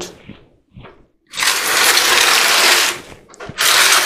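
Terracotta pots in a plastic tray dragged across a tiled floor: a scraping rattle lasting about a second and a half, then a second short scrape near the end.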